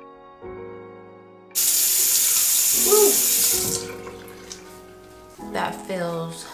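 Water from a bathroom sink tap running and splashing as soap is rinsed off a face. The sound starts suddenly about one and a half seconds in, lasts about two seconds and then tails off, over soft background music.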